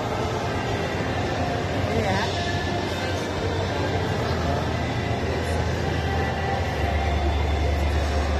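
Shopping-mall ambience: indistinct voices of passers-by over a steady low rumble, which grows louder near the end.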